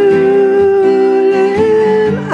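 Two acoustic guitars strumming steadily under a long, wordless sung note that is held and then steps up slightly near the end.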